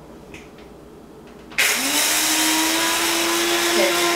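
Small electric blade coffee grinder switched on about one and a half seconds in, its motor running steadily as it grinds flax seeds into meal. The hum rises slightly in pitch as the motor comes up to speed just after starting.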